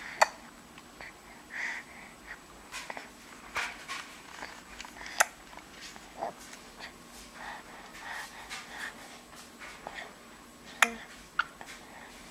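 A breastfed baby suckling at the breast: soft wet gulping sounds at an uneven pace, mixed with irregular sharp clicks, the loudest of them about five seconds in and near the end.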